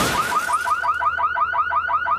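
Car alarm sounding a fast, repeating warble of short rising-and-falling chirps, about six or seven a second.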